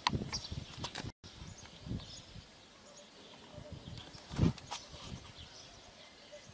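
Outdoor ambience with birds chirping and scattered knocks and bumps. The sound cuts out completely for a moment just after a second in. The loudest event is a low thump about four and a half seconds in.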